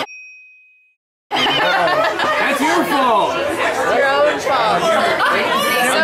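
A single short, high ding that rings and dies away within about a second, then a moment of silence. From then on, several voices talk and chatter over each other.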